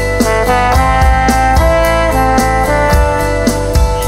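Instrumental passage of a pop song: a melody over a steady drum beat, with no singing.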